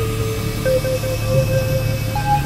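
Experimental electronic drone music: a steady low synthesizer drone under a held higher tone that steps up slightly in pitch about two-thirds of a second in.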